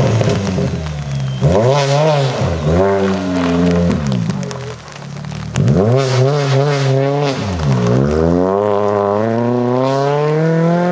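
Citroën DS3 rally car's engine revving hard through the gears. It drops away briefly about five seconds in as the car runs off the road onto the grass, then revs up again and pulls away with a long rising note near the end.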